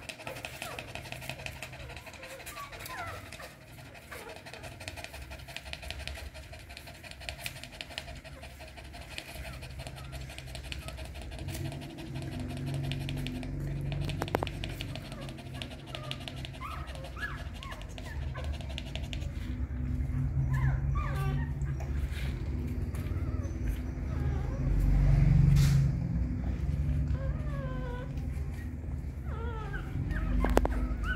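Newborn puppies whimpering and squeaking again and again in short, thin, high cries as they nurse, over the mother dog's fast panting. A low muffled noise builds in the second half.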